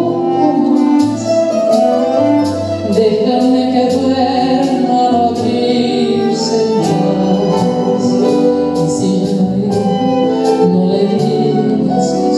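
A woman singing a Spanish-language song into a microphone, accompanied by acoustic guitars, with a steady beat of about two strokes a second.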